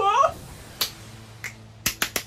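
A short vocal sound at the start, then three sharp hand claps spread over about a second.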